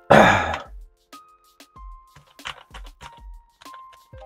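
A man clears his throat, then scattered key clicks and soft thuds from a mechanical keyboard with Kailh Box switches as typing begins, over soft background music with held notes.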